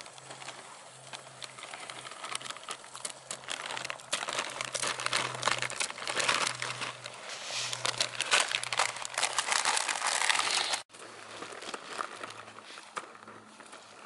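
A foil wrapper being handled and crumpled by hand: a dense crinkling crackle full of small clicks, loudest in the middle and stopping abruptly near the end.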